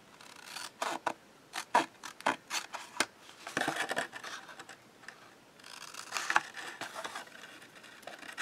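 Scissors snipping through a sheet of white paper: a run of short, crisp snips in the first three seconds, then the softer rustle of the paper being handled.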